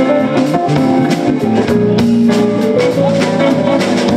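Live rock band playing an instrumental stretch: electric guitar notes held over a steady drum-kit beat.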